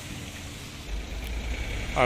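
A motor vehicle engine idling, a steady low pulsing rumble; a deeper rumble comes in about a second in.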